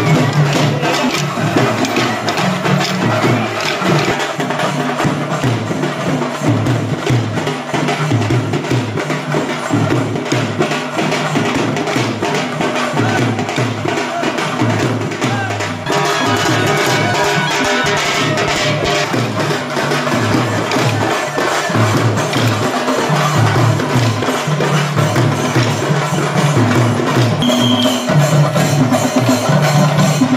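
Many pairs of wooden kolatam sticks clacking together in rhythm over loud music with drumming. The music shifts a little past halfway.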